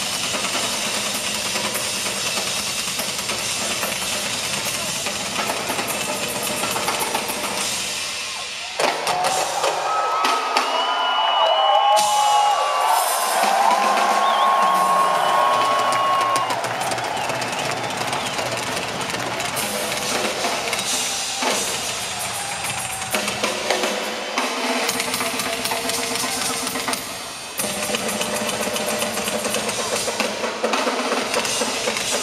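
Several drummers playing full rock drum kits together live, with fast kick drums, snare, toms and cymbals. About nine seconds in the low drums drop away for several seconds while sustained higher tones ring over the cymbals, then the full kits come back in.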